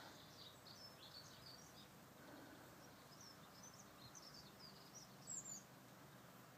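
Faint chirping of small songbirds, many short high calls scattered throughout, with one louder, higher chirp near the end.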